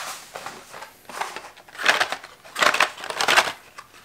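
Plastic shopping bag crinkling and rustling in irregular bursts as carded die-cast toy cars are pulled out of it, loudest about halfway through and again shortly after.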